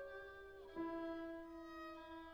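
Solo violin line in slow, soft held notes: a sustained note gives way about three quarters of a second in to a lower note held to the end.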